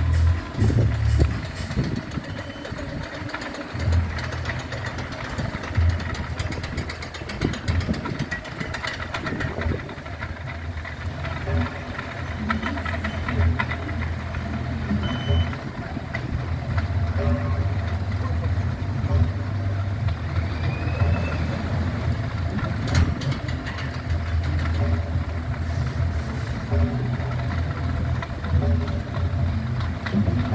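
Funfair din: loud music with a heavy bass line from the ride sound systems, voices, and the small steel coaster's taxi car running along its track.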